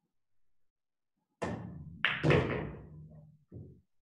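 Pool shot: a sharp click of the cue tip striking the cue ball about a second and a half in, then louder clacks of balls colliding half a second later that die away, and a short knock near the end.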